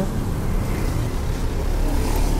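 Steady rumble of road traffic from vehicles going by on a main road.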